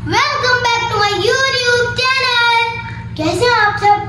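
A young girl singing, holding long notes that slide up and down in pitch, with a brief break about three seconds in.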